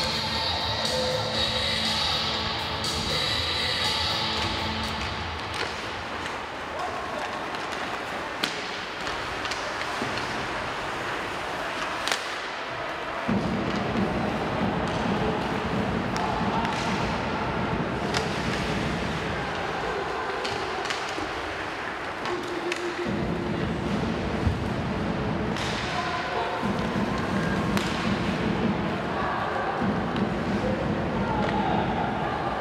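Arena music over the PA fades in the first few seconds. It gives way to the sound of an ice hockey game in a rink: sharp clacks and knocks of sticks, puck and boards scattered through, over a steady noisy arena background.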